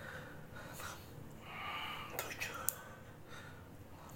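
A man breathing hard and whispering through exhalations while working out with a dumbbell, with two sharp clicks about two and a half seconds in.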